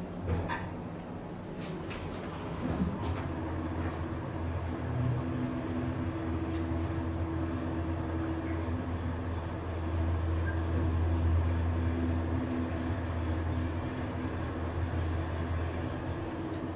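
Schindler 3300 AP machine-room-less elevator car travelling up several floors: a steady low hum and rumble of the ride with a fainter higher drone, building up over the first few seconds as the car gets under way.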